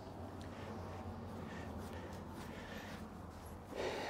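Soft brush strokes on a horse's coat over a steady low hum, with a short breathy burst near the end.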